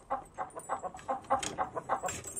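Domestic chickens clucking, a quick run of short clucks.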